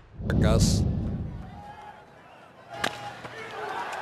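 Sound effect of a TV broadcast title card: a sharp hit about a third of a second in with a low rumble that swells and fades over about a second, then a second sharp hit near three seconds in.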